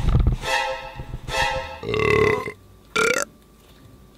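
A loud, rough burp about two seconds in, after a second or so of drawn-out vocal sound, with a short rising vocal sound about a second later.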